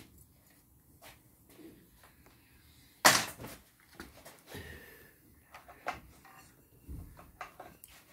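Scattered metallic clicks and knocks of hand work on a Gilera GP800 scooter engine on a workbench, with one loud sharp knock about three seconds in, while the engine is turned over by hand to line up the timing marks.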